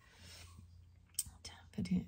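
A woman speaking under her breath, soft and whispery, during a pause in the reading. There is a brief click about a second in, and her full voice starts again near the end.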